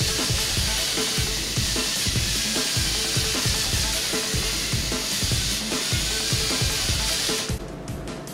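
Thames & Kosmos GeckoBot toy robot running, its small electric motor and plastic gear train making a steady whirring hiss with irregular clacks from the moving legs and suction feet; the sound cuts off shortly before the end.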